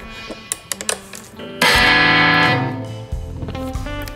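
Electric guitar: a few quiet plucks and handling clicks, then about a second and a half in a loud chord is struck and left to ring out for over a second.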